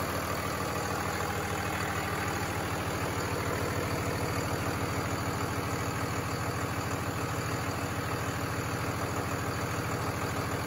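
Cummins diesel engine idling steadily, with an even, rapid run of firing pulses.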